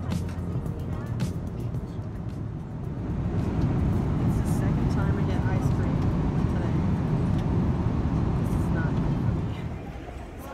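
Steady low roar of an airliner cabin in flight, growing louder about three seconds in, with faint voices in the background.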